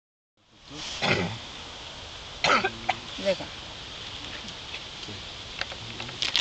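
A person's voice: two short, loud, noisy vocal bursts about a second and a half apart, then a brief spoken word, over steady room noise.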